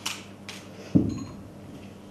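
A hard object set down on a tabletop with a single knock about a second in, followed by a brief faint ring; two lighter handling noises come before it.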